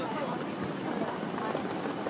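Busy pedestrian street ambience: indistinct chatter of passers-by mixed with footsteps on paving.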